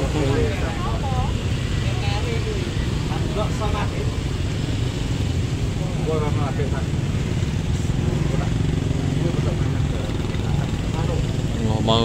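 Deep, steady bass from the subwoofer stacks of a Tanpa Batas Audio 'sound horeg' system during a sound check, with men talking close by.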